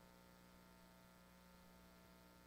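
Near silence: a faint steady electrical hum.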